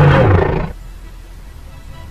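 A loud roar that drops in pitch and cuts off under a second in.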